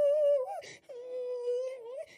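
A high voice, unaccompanied, holding a long, slightly wavering note. A short breath comes about half a second in, then a second, slightly lower note is held almost to the end.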